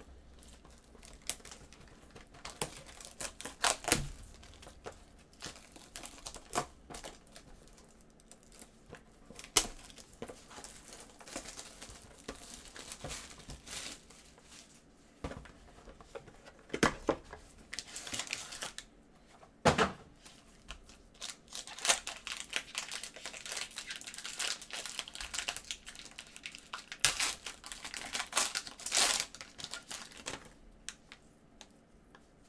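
Plastic card holders and a black foil pack wrapper crinkling as they are handled, with irregular sharp crackles that grow denser toward the end as the pack is torn open.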